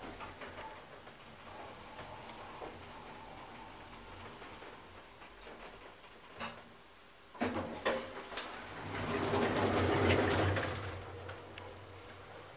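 1997 KONE Monospace machine-room-less traction elevator with a gearless EcoDisc machine travelling one floor with a steady low hum, stopping with a sharp clunk about seven seconds in. Near the end the car doors slide open with a swelling rush of noise that fades away.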